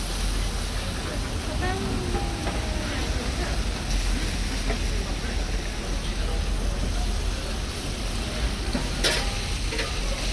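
Chicken pieces sizzling steadily on a flat-top griddle, with metal spatulas scraping and clacking against the plate as the meat is turned. A sharper scrape or clack stands out about nine seconds in.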